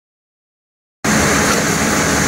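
Silence, then about a second in a sudden start of steady, loud machinery noise with a low hum: a Muratec 21C automatic cone winder running.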